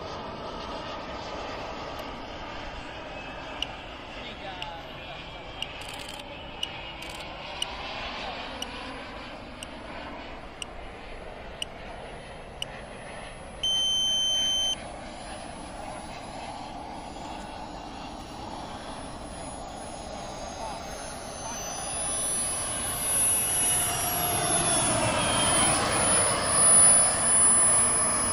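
SW190 turbine of a 2.6 m RC L-39 jet running on landing approach with its gear down, growing louder over the last six seconds as it comes in to the runway. A steady electronic beep about a second long sounds midway, and a few sharp clicks come early on.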